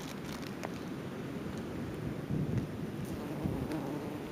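Wind buffeting the microphone over the rush of ocean surf, with a stronger gust about two and a half seconds in.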